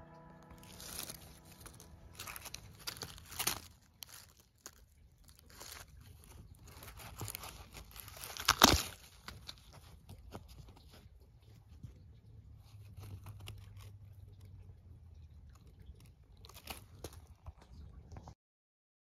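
Rustling and crackling of close handling, irregular clicks and crunches, with one sharp crack about nine seconds in.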